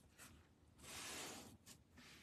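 Faint scratching of a pen nib drawing a curved stroke on a paper tile, swelling for about a second in the middle.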